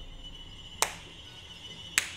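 Two sharp clicks about a second apart over faint, sustained background music.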